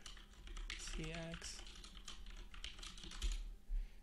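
Typing on a computer keyboard: a quick run of keystrokes, with a couple of louder key taps near the end.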